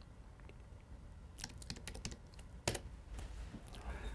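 Faint typing on a computer keyboard: a handful of light keystrokes starting about a second and a half in, with one sharper click a little past halfway.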